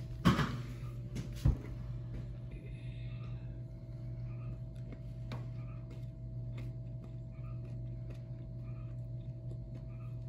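Steady low hum of room tone, broken by two sharp knocks about a quarter second and a second and a half in.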